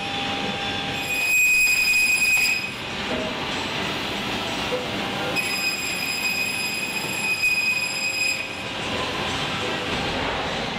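Woodworking panel machinery running with a steady mechanical din. A high-pitched whine, with higher tones stacked above it, comes in twice: from about one to two and a half seconds, when it is loudest, and again from about five and a half to eight and a half seconds.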